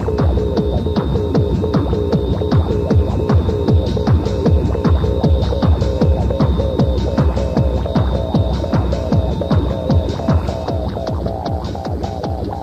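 Techno DJ mix: a steady pounding kick-drum beat under a repeating synth riff, with a thin high tone held above it. The riff moves up in pitch about ten and a half seconds in.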